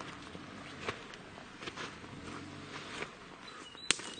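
Footsteps with scattered light scuffs and clicks, and a sharper click near the end.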